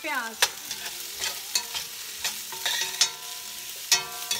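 Sliced red onions sizzling in hot oil in a stainless steel pan as a spoon stirs them, with a series of sharp clinks of the spoon against the pan.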